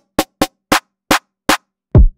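Electronic drum samples triggered one at a time from a pad controller: a string of short, crisp percussion hits at uneven spacing, a few per second, then a deep kick with a falling pitch at the end.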